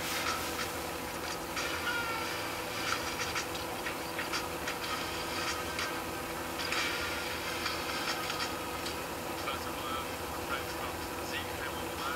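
Scattered light clicks of a laptop touchpad as pages are browsed, over a steady electrical hum.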